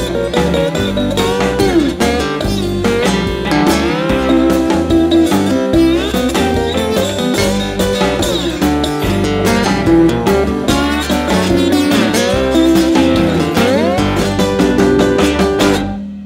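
Instrumental guitar break in a blues-rock band arrangement: a lead guitar with bending, gliding notes over bass and drums. The band stops abruptly right at the end.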